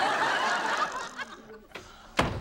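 Sitcom studio audience laughing together, the laugh swelling at once and dying away about a second and a half in.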